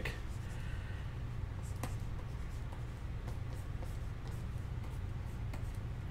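Stylus pen lightly scratching and tapping on a Wacom drawing tablet, with a few faint clicks, over a steady low hum.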